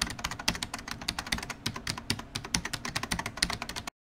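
Computer-keyboard typing sound effect: rapid key clicks, about a dozen a second, accompanying text being typed out on screen, stopping abruptly near the end.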